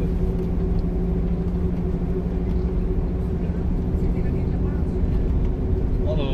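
Bus engine and road noise heard from inside the cabin while driving: a steady low hum with no sudden events.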